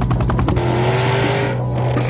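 Jaguar F-TYPE coupe's engine accelerating hard, its note rising slowly, with a broad rush of road and tyre noise; the sound cuts off abruptly about a second and a half in.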